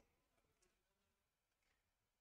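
Near silence: the recording is almost empty.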